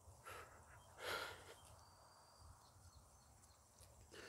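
Near silence, broken about a second in by one short breath from a man pausing while upset.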